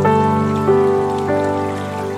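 Background piano music: soft sustained notes, with new notes struck at the start, about two-thirds of a second in, and again about a second and a third in.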